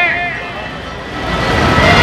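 Street noise with a low vehicle engine rumble, heard in a pause between phrases of a man's speech over a loudspeaker system. The speech trails off at the start and comes back near the end.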